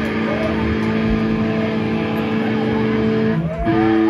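Amplified electric guitars and bass with distortion hold one steady chord, which changes to a louder held note near the end. A few shouts from the crowd come over it.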